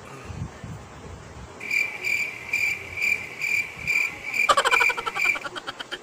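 High-pitched chirping calls repeating about twice a second for several seconds, joined near the end by a quick rattling croak, like frogs or insects calling at night.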